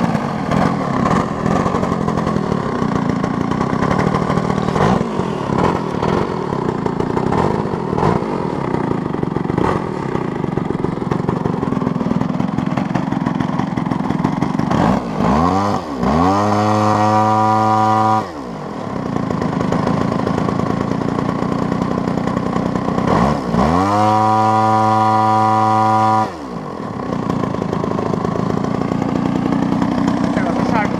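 RCGF 55cc two-stroke gasoline engine on a 30% scale P-51 Mustang model, running at low throttle with the propeller turning. It is twice run up to high throttle, with the pitch rising, holding steady for about two to three seconds, then falling back to idle.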